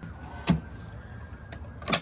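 Plywood fold-out table panel knocking against its metal folding shelf brackets as it is moved: one sharp knock about half a second in and a louder knock with a brief rattle near the end.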